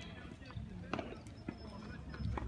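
Tennis ball impacts during a clay-court rally: two sharp knocks, about half a second apart, from the ball being hit and bouncing.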